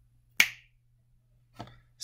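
A single finger snap, sharp and short, about half a second in.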